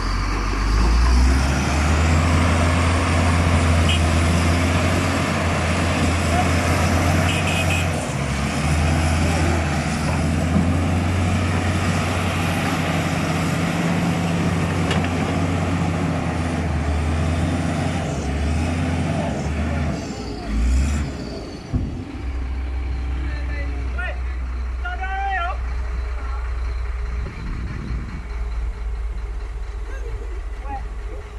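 Doosan DX225LCA excavator's diesel engine running under load, its low drone shifting as the arm and bucket work; about 22 seconds in it settles to a steadier, lower note. A man's voice calls out briefly a few seconds later.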